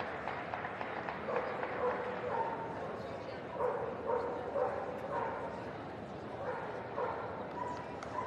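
A dog barking over and over in short, level-pitched barks, about two a second in runs, over a murmur of voices.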